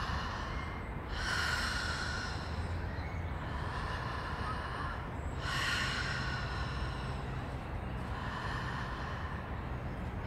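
A woman breathing deeply and audibly through her open mouth in breathwork-style connected breathing: each inhale runs straight into the exhale with no pause. The loudest breaths come about a second in and about five seconds in.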